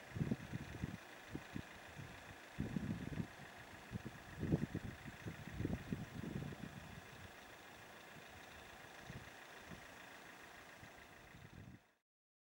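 Distant Boeing 767 jet engines running at idle on the ground, a steady whine, with irregular low rumbles over the first half. The sound cuts off suddenly near the end.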